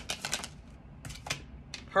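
Oracle cards being shuffled and flicked off a hand-held deck: a quick run of crisp card clicks, then two more about a second in and one more near the end.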